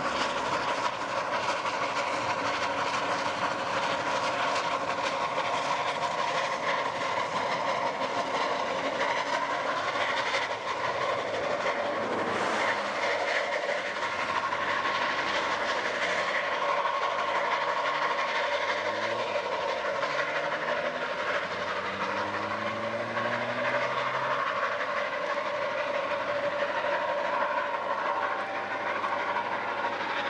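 Two narrow-gauge steam locomotives, SKGLB No. 4 and Mh6, double-heading a train under steam: a steady sound of working exhaust and hissing steam, with the clatter of the carriages on the rails.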